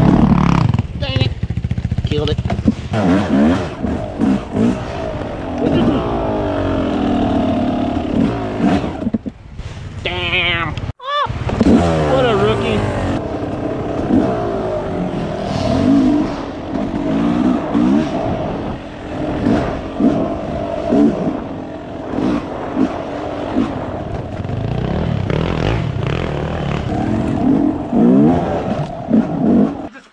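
Dirt bike engine revving up and down continuously as it is ridden over rough, snowy trail, heard from the rider's helmet. The sound cuts out for an instant about eleven seconds in.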